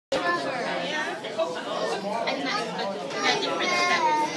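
Chatter of many overlapping children's voices, with no single speaker standing out, in a large gymnastics hall.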